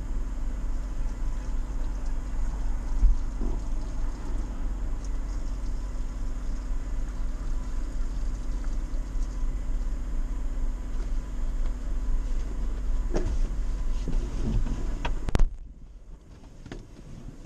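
Off-road vehicle's engine idling steadily at a standstill, heard from inside the cab as a low rumble. A thump comes about three seconds in, a few knocks and clicks follow near the end, and then the sound drops off suddenly.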